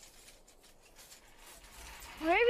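Near silence: a faint hiss with a low rumble that grows a little louder near the end.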